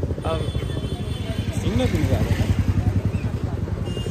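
Motorcycle engine running close by, a low rapid throbbing that carries on steadily, with snatches of voices over it.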